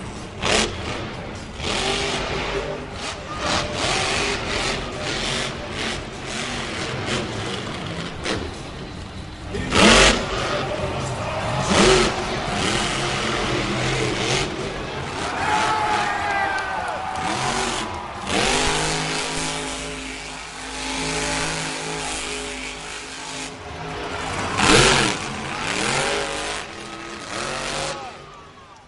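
Monster truck engine revving hard in bursts on a freestyle run, over loud arena noise. There are sharp, loud surges about ten and twelve seconds in and again near the end.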